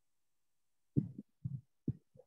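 Three short, low, muffled thuds about half a second apart, starting about a second in, coming over a video-call microphone.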